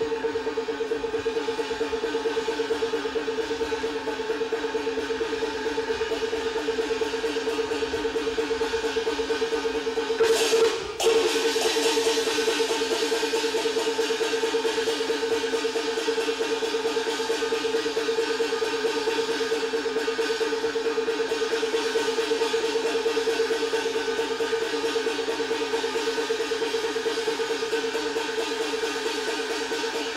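Peking opera instrumental accompaniment: a fast, even repeated figure running under one strong held note, broken by a short clash a little past ten seconds in.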